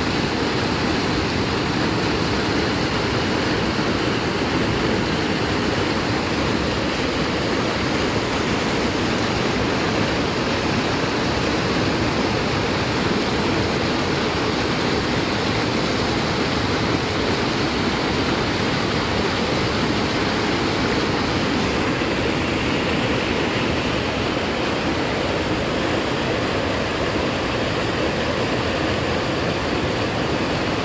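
Whitewater of a rocky mountain stream rushing over boulders: a loud, steady noise of water with no break.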